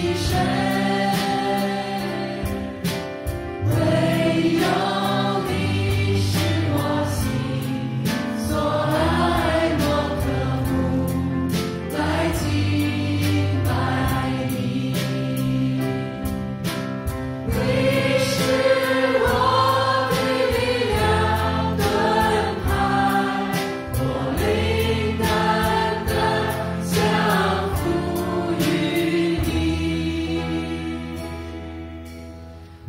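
Live church worship band: several men and women singing a Chinese worship song together into microphones, backed by electric guitar, keyboard and a drum kit with regular cymbal and drum hits.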